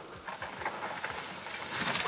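Mountain bike coming down a steep dirt trail, its tyres running over dirt and dry leaf litter with many small clicks and knocks. It grows louder as it nears.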